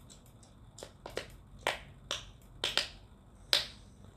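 A series of about seven short, sharp clicks at an uneven pace, starting about a second in, the loudest one near the end.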